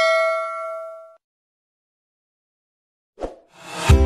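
Notification-bell chime sound effect ringing out and fading away over the first second. After a silence, a brief swish near the end leads into strummed guitar music.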